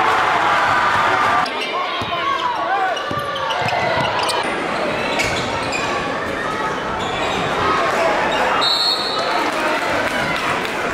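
Basketball bouncing on a hardwood gym floor, several separate bounces, with people's voices in the gym around it.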